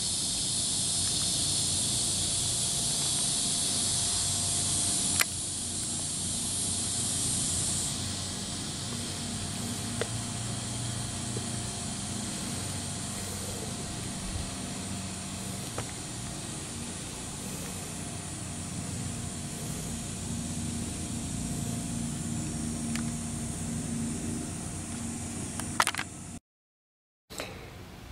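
Outdoor summer ambience: a steady high-pitched insect drone that eases off about eight seconds in, over a low distant traffic rumble, with a single faint click about five seconds in.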